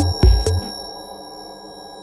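Minimal techno track: the kick drum beat runs for about half a second, then drops out, leaving held synth tones that slowly fade.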